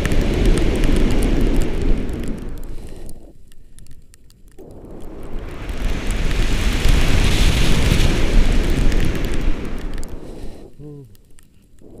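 Wind rushing over an action camera's microphone in flight under a tandem paraglider, in gusts that swell loud, fade, then swell again. A brief voice sounds near the end.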